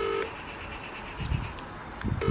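Ringback tone of an unanswered outgoing call heard through a mobile phone's speaker, the British double-ring: one ring ends just after the start, then comes the pause before the next ring, with a soft low thump about a second and a quarter in.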